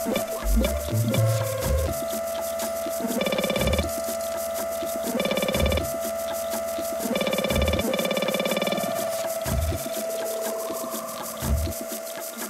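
Live electronic music played on hardware synthesizers and an Elektron Octatrack sampler: a held synth tone over a deep bass thump roughly every two seconds, with short brighter chord swells between the thumps.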